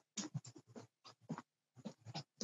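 Faint, irregular scratching and rustling in short bursts, broken by brief silent gaps.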